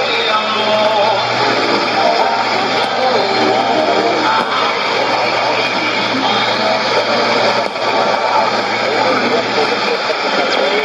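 Radio MiAmigo's shortwave broadcast played through a Sony ICF-2001D receiver's speaker: music with a voice over it, under steady static hiss and a low hum from the weak long-distance signal.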